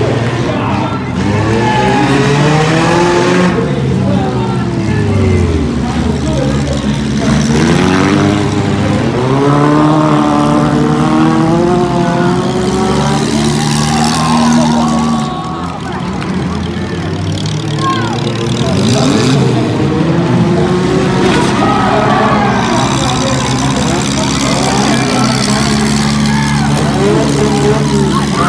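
Several demolition-derby cars' engines revving hard, their pitch rising and falling as they accelerate and reverse, with occasional thuds of cars ramming each other.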